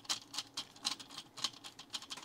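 Vessel Vector low-voltage insulated screwdriver turning a terminal screw: a rapid run of small, sharp clicks, about six or seven a second, as the tip works the screw head with short twists.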